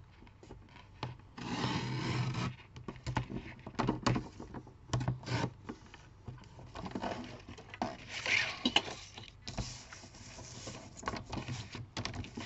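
Sliding paper trimmer cutting cardstock: the blade carriage scrapes along its rail in three or four strokes of about a second each, with sharp clicks and paper being shifted on the trimmer between strokes.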